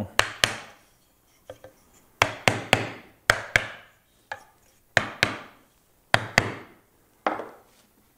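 A mallet knocking a glued wooden cross piece home into the holes of a wooden rack frame: about a dozen sharp strikes, mostly in twos and threes with short pauses between.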